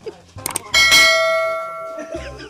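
A couple of short knocks, then a bell struck once about three-quarters of a second in, ringing on with a clear tone and slowly fading. No bell is in the picture, so it is a sound effect laid over the turkey fight.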